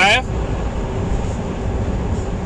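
Steady road and engine noise inside a moving car's cabin: an even low rumble with a faint steady hum.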